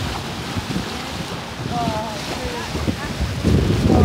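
Water rushing along the bow of a boat under way, with wind buffeting the microphone and a louder gust of water and wind near the end. A few short, high gliding squeaks come about halfway through.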